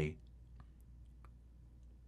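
A man's voice-over speech trails off just at the start, then near silence with a low steady hum and a few faint, scattered small clicks.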